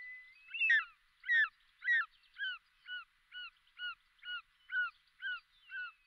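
A bird of prey calling: a series of about eleven short, hooked calls at roughly two a second, getting quieter after the first few.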